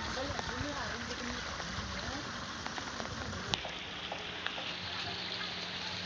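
Faint voices in the background over a steady outdoor hiss. About three and a half seconds in there is a sharp click, after which the background changes and a low steady hum continues.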